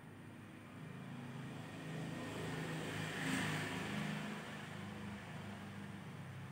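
A vehicle passing by: its noise swells, peaks a little past halfway and fades, over a steady low hum.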